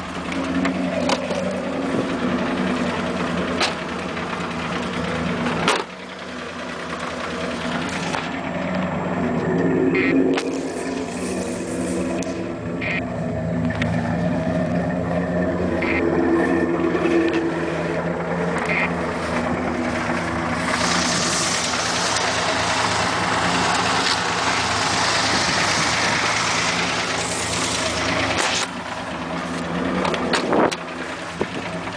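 Pickup truck engine running and revving through a mud hole, heard from inside the cab, its pitch rising and falling. From about two-thirds of the way in, a loud rushing spray of mud and water against the body joins it for several seconds.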